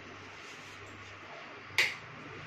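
A single short, sharp click near the end, over a faint steady low hum.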